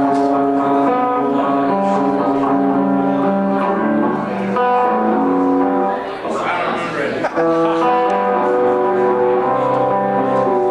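Live band music with electric guitar: held chords that change every second or so, with a denser, noisier stretch about six to seven seconds in.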